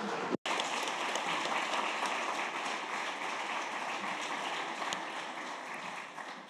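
Audience applauding steadily, easing off a little toward the end. The sound cuts out completely for an instant about half a second in.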